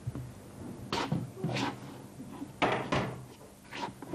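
About five separate sharp knocks and bumps, irregularly spaced, from objects and furniture being handled on a stage.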